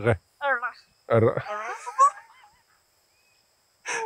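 A person's voice in short unworded exclamations during the first half, then a pause of about a second with almost nothing to hear.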